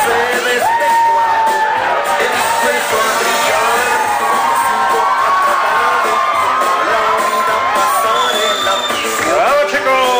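Loud music playing in a hall while a crowd cheers and whoops, with a burst of shrill whoops near the end.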